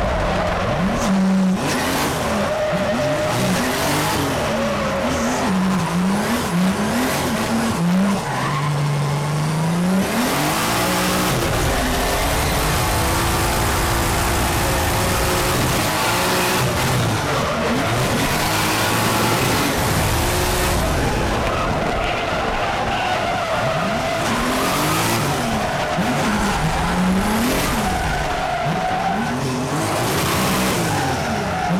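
Toyota 86-X drift car heard from inside the cabin, its engine revving up and down again and again through a run of drifts over the constant noise of tyres sliding and squealing.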